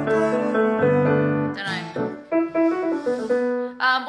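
Piano playing sustained chords over low bass notes, thinning about halfway through to a few higher single notes that stop just before the end.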